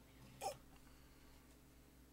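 Near silence: faint room tone, broken about half a second in by a man's single short 'ooh' exclamation.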